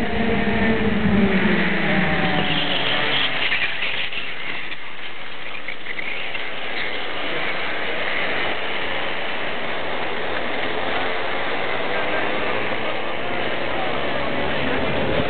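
Racing kart engines running on the circuit. Their pitched notes glide as the karts pass during the first three seconds, then blend into a steady mixed engine noise.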